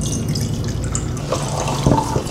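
Tap water being poured from a glass flask into a glass beaker: a steady stream splashing into the glass.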